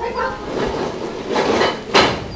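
Footsteps climbing concrete steps, with a rushing noise that swells through the middle and one sharp knock near the end.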